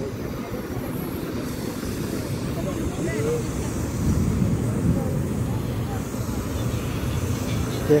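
Busy open-air ambience: a steady low rumble with scattered voices of people walking about.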